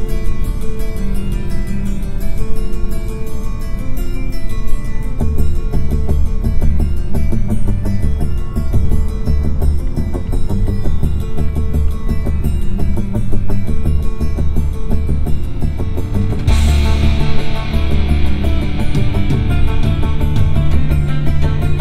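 Rock music playing through the 2021 Volvo V90's Bowers & Wilkins car audio system, heard inside the cabin. A heavy bass line comes in about five seconds in, and the music turns brighter and fuller at around sixteen seconds.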